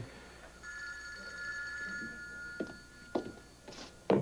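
Desk telephone's electronic ringer trilling in one long ring, starting just under a second in. Two light knocks come near the end.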